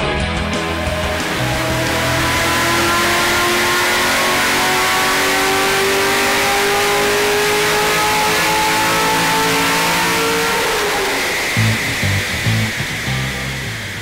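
Chevrolet Corvette Z06's 427 cubic inch LS7 V8, fitted with a FAST LSXR 102 mm intake manifold, making a full-throttle pull on a chassis dyno. The pitch climbs steadily for about ten seconds, then falls away as the throttle closes and the engine runs down unevenly near the end.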